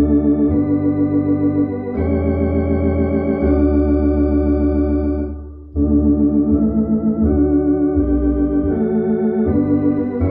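Hammond organ tone from the B4 software organ, played from a Tokai MD-750S organ's keyboards: slow, sustained hymn chords with a wavering vibrato over a low bass line. The chords change every second or two, and the sound dips briefly between chords about five and a half seconds in.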